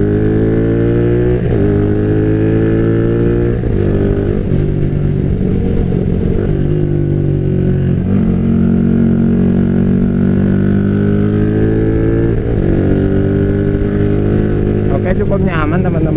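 Yamaha Jupiter MX single-cylinder four-stroke engine, bored up to 177 cc with a 62 mm piston, pulling on the road. Its note climbs steadily through each gear and drops at each of four gear changes as the motorcycle rides on.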